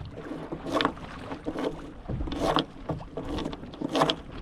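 Water rushing and slapping against the hull of a small sailing dinghy under way through chop, surging louder in about five irregular bursts.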